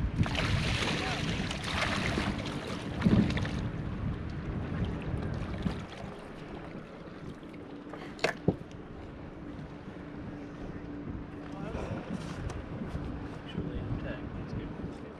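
Paddlefish splashing and thrashing at the surface beside an aluminium boat for the first few seconds. Two sharp knocks follow about eight seconds in, as the fish is hauled onto the metal deck. A steady low motor hum and wind on the microphone run throughout.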